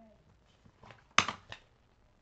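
Handling noise: a sharp tap about a second in, with a couple of faint ticks around it, as a sheet of thin metal craft cutting dies is picked up.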